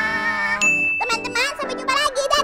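A single short, bright ding sound effect about half a second in, over light background music.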